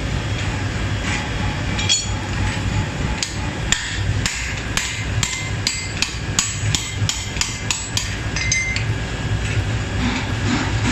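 Hand hammer striking a Muller Swedish carpenter broad-axe blank held in tongs on an anvil. A quick series of sharp, ringing blows starts about two seconds in and stops near the end, at roughly two to three a second, over a steady low rumble.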